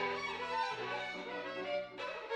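Solo violin playing a melody, accompanied by a Yamaha grand piano holding low sustained notes that change under it.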